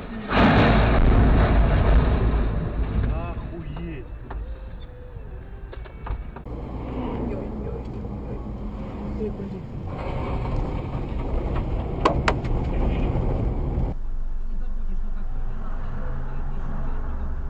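Dash-cam recording from inside a moving car: steady engine and road rumble. A loud, rough burst of noise runs through the first two seconds, and a few sharp clicks come about twelve seconds in.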